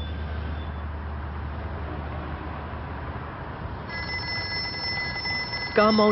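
Steady low hum of a car's cabin; about four seconds in, a phone starts ringing with a steady electronic tone.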